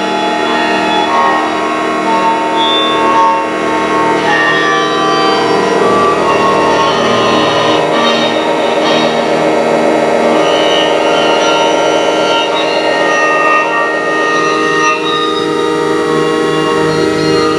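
Experimental noise-ambient improvisation: many layered, steady synthesized tones from live-coded square, sine and triangle wave oscillators, together with a bowed acoustic guitar, form a dense, unbroken drone.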